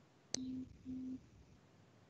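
A click, then two short, low electronic beeps of the same pitch, one right after the other.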